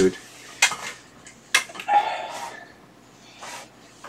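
Small objects and tools being handled on a workbench: a few light clicks and knocks, with a short scrape about two seconds in.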